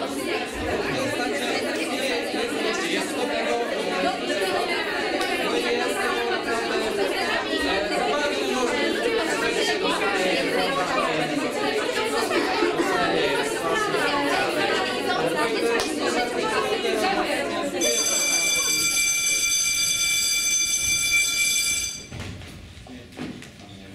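Many young voices talking over one another at once in a dense, continuous babble. About eighteen seconds in, a high, steady electronic tone comes in, the voices fade under it, and the tone holds for about four seconds before cutting off suddenly.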